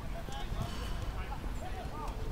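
Players calling out to each other across a football pitch, their voices distant over a steady wind rumble on the microphone, with a couple of short thuds from play.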